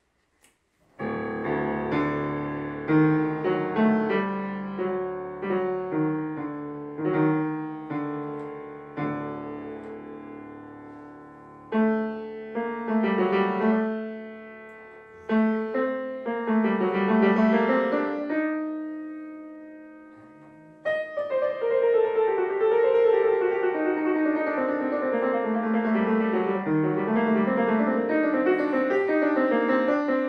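Solo Steinway grand piano playing, starting about a second in: separate struck chords left to ring and fade, then a held chord dying away about two-thirds of the way through, followed by a continuous stream of faster notes.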